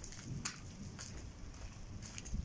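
Faint outdoor background noise: a low rumble with a few light clicks about half a second and a second in.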